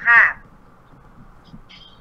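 A man's voice speaking one short word, then a pause of about a second and a half with only faint room noise.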